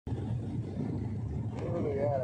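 A steady low drone, with a person's voice coming in over it about one and a half seconds in.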